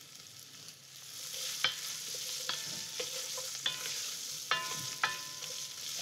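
Chopped carrots and celery sizzling in hot oil in an enamelled pot, being stirred with a wooden spoon. The sizzle swells about a second in, and the spoon knocks against the pot about six times, some knocks leaving a short ring.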